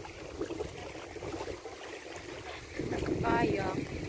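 Wind buffeting the microphone, a flickering low rumble over steady outdoor noise, with a short drawn-out voiced 'oh' near the end.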